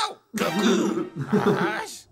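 A person's loud, rough vocal sound without words, lasting about a second and a half, just after a short spoken 'Chao!'.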